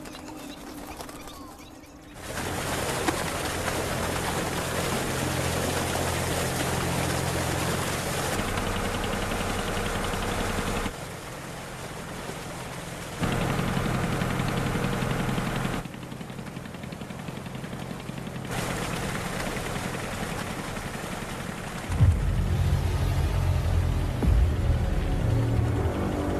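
A small motorboat's engine running, with water rushing along the hull, starting suddenly about two seconds in. The sound steps louder and quieter several times.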